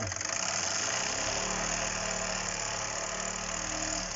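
Wilesco D101 toy steam engine running fast and steadily, a rapid chuff over a steam hiss, while its retrofitted aquarium-type regulating valve is worked by hand. A steady hum joins about a second in.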